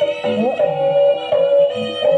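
Javanese jaranan dance music: a held melody line with a note that slides up about half a second in, over scattered low drum beats.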